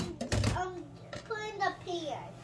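A young child's voice, making short hesitant sounds while thinking of an answer, with a soft thump about half a second in.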